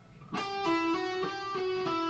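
Electric guitar playing a fast E minor legato lick, the notes sounded by hammer-ons and pull-offs with only one pick per string. A quick run of separate notes starts about a third of a second in, after a brief silence.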